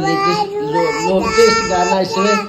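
A toddler singing, drawing out long wavering notes.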